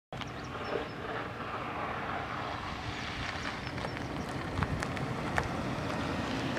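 Steady wind rumble on the microphone with the sound of a vehicle on the road, and a few faint clicks; it starts suddenly just after the start.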